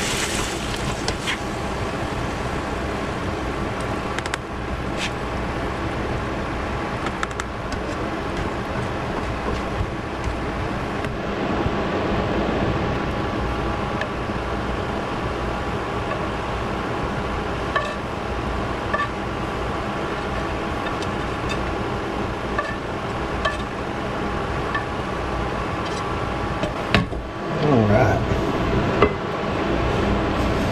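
Chopped steak sizzling in its juices in a frying pan on an induction hot plate: a steady hiss with scattered sharp ticks. A spatula stirs it and scrapes the meat against the pan.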